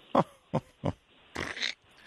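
A man laughing in short, separate bursts, three quick ones and then a longer one, in response to a joke.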